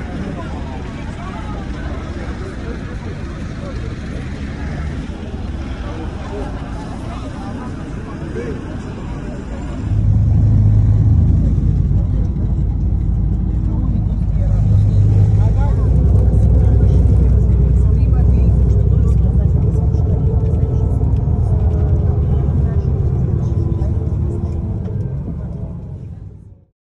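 Crowd of passengers talking over one another while pushing to board a city bus. About ten seconds in, the sound changes to the inside of the packed bus on the move: a loud, steady, low rumble of the engine and road under the passengers' voices.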